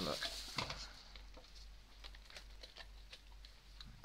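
Faint, scattered light clicks and taps of hard plastic being handled, as the perforated plastic dome lid of an LED star projector is fitted back onto its base.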